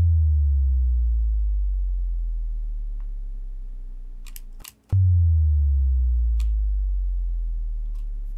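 Serum sub-boom: a deep sub-bass note in G whose pitch drops quickly at the start as an envelope pulls the coarse pitch down, then fades out slowly over about five seconds. It sounds twice, the second boom about five seconds in.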